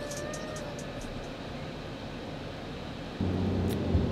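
A held musical note fades out in the first second, leaving the steady hiss of a car's interior. A little past three seconds a lower hum comes in.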